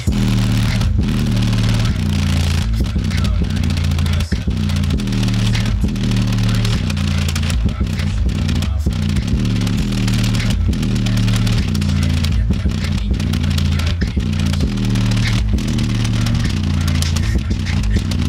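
Rap track played loud through an Alpine Type R 12-inch subwoofer in a ported box, driven by a JL amplifier. A heavy bass line stepping between low notes dominates throughout.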